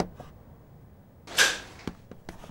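A door being opened: a short swish as the door swings open a little past halfway, with light clicks from the handle and latch.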